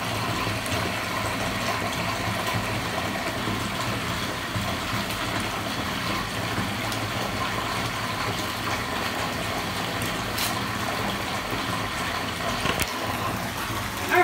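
Water running steadily from the tap into a filling bathtub.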